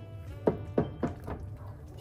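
Wooden spoon knocking against the side of a nonstick pan as it stirs a thick cream sauce, about four dull knocks in quick succession.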